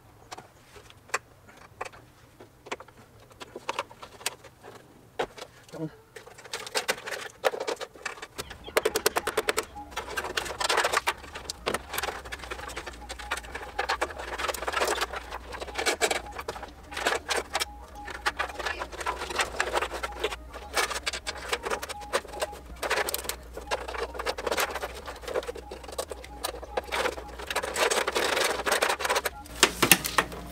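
Hand work on a car's trunk lid: repeated clicks, snaps and rattles as the wiring harness and its plastic clips are unplugged and pulled out. A steady low hum joins in about eight seconds in.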